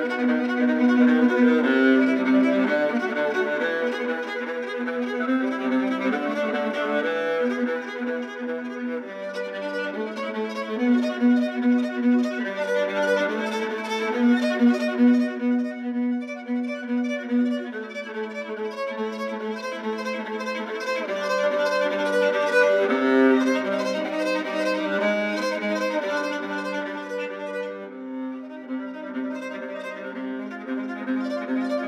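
Solo viola, bowed, playing a slow contemporary piece of sustained notes, with a busier stretch of quick, short strokes in the middle.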